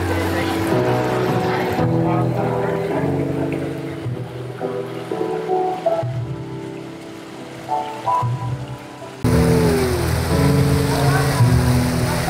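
Background music of steady held notes, stepping up suddenly in loudness about nine seconds in.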